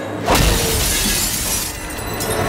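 A sudden crash of shattering glass about a third of a second in, the breaking noise running on for over a second before dying away: a fight-scene impact sound effect.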